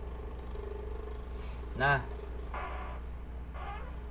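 A steady low background hum with a faint higher steady tone above it, unchanged throughout, with one short spoken word about two seconds in.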